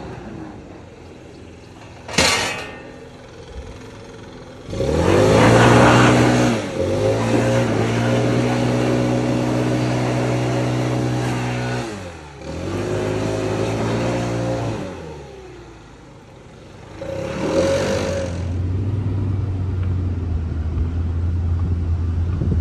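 Toro Titan HD zero-turn mower engine revving up about five seconds in and running at high throttle. The revs drop twice, around twelve and sixteen seconds in, and pick back up each time. A sharp knock comes about two seconds in.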